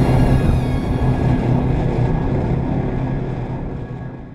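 Snowmobile engine running at speed, a steady drone, under background music that fades early on; the whole sound fades down toward the end.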